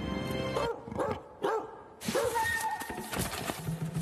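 A leopard snarling in several short rising-and-falling growls over dramatic music. The music drops away under the first growls and swells back about halfway through.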